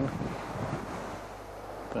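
Steady outdoor wind noise, an even rushing hiss.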